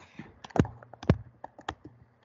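Typing on a computer keyboard: an uneven run of sharp key clicks as a word is typed.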